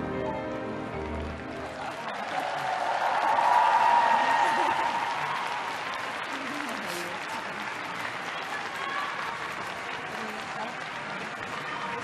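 The last notes of the skating program's music die away, then an arena audience applauds. The applause swells to its loudest about four seconds in and carries on at a lower level.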